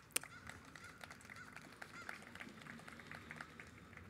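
Quiet handling of a book close to a microphone: one sharp click just after the start, then faint scattered ticks over a low outdoor background.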